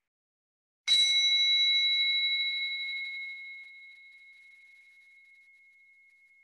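Small singing bowl struck once with a mallet about a second in, ringing with several high tones that fade slowly; one high tone lingers longest after the others die away.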